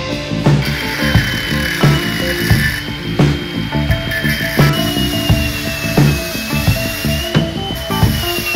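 Handheld angle grinder cutting into the steel exhaust bracket, a high whine that sags and climbs in pitch as it bites. It is heard under background music with a steady beat.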